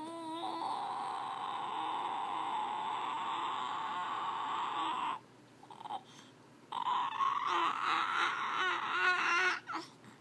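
A baby vocalizing in two long, breathy, cry-like sounds: the first lasts about five seconds, and after a short pause the second lasts about three seconds, ending in a few short pitched notes.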